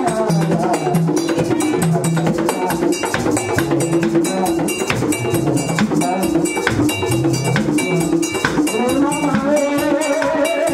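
Haitian Vodou ceremonial drumming: hand drums beaten in a steady rhythm with a metal bell struck over them. Voices sing over the drums near the start and again near the end.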